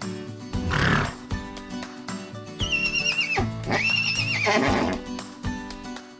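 A horse whinnying twice in high, quavering calls, each under a second long and dropping in pitch at the end, over background music.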